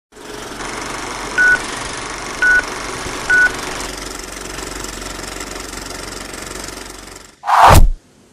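Steady whirring, rattling run of an old film projector, with three short identical beeps about a second apart early on, like a film-leader countdown. Near the end the run stops and a loud whoosh, the loudest sound, sweeps through.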